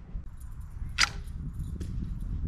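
Homemade wooden longbow shot: the bowstring snaps forward with one sharp crack about a second in, followed by a fainter click. Wind rumbles on the microphone throughout.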